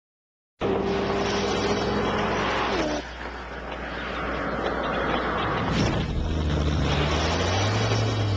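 Koenigsegg CCR supercar's supercharged V8 running hard at speed. Its note drops sharply about three seconds in, as a car going by would, then builds and rises again toward the end as it accelerates.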